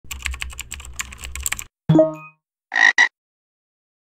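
Intro sound effects: rapid clicking of computer-keyboard typing for about a second and a half, then a single short pitched tone. A frog croak in two quick parts follows.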